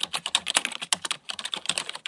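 Rapid typing on a computer keyboard: a fast, unbroken run of key clicks.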